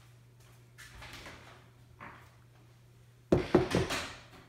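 Kitchen handling: quiet rustling and a light tap, then a quick run of several sharp knocks and clatter near the end as a freshly candy-coated apple on its stick is set down on a silicone baking mat.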